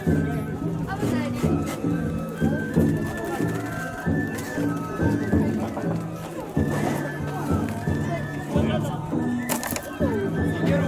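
Danjiri float's hayashi music: drums and small gongs beaten in a quick, steady rhythm, with a flute playing a stepping melody above them, mixed with the voices of the crowd around the float.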